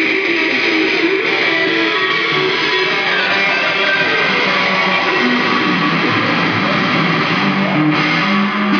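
Electric guitar played through an amplifier, running loud and without a break, with no singing over it.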